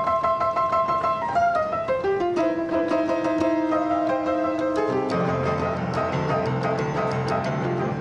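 Upright piano being played: a melody over held and repeated notes, with lower chords joining about five seconds in.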